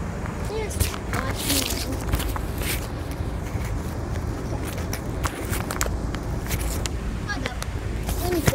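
Handling noise from a handheld phone: scattered rustles, scrapes and knocks over a steady low rumble, with faint voices in the background.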